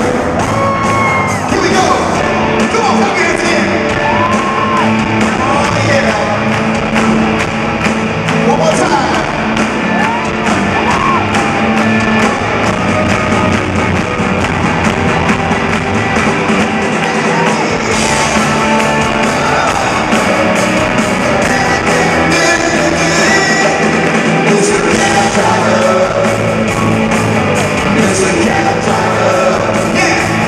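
Live rock band playing in an arena, with electric guitars, drums and singing over a steady beat, echoing in the large hall.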